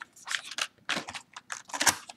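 Cardboard screen-protector box being opened by hand, the flap pulled back and the plastic tray inside handled: a run of short papery rustles and scrapes, the loudest near the end.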